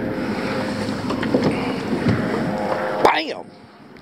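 Steady wind and choppy water noise around a small fishing boat, with scattered clicks and knocks as a black crappie is reeled up and brought aboard. A short sliding sound about three seconds in, after which the noise drops away sharply.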